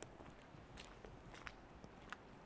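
Near silence with a few faint footsteps of a person walking, the clearest about a second apart near the middle.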